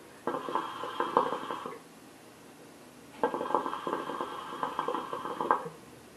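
Hookah water bubbling as smoke is drawn through the hose. There are two pulls: a short one of about a second and a half, then after a pause a longer one of about two and a half seconds.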